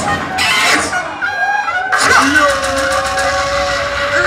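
A dancehall deejay's voice chanting through a loud PA sound system over the backing riddim. A long held tone sets in about halfway through.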